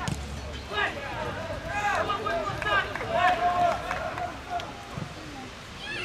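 Players' voices shouting and calling to each other during play, in short raised calls throughout, with one sharp knock right at the start.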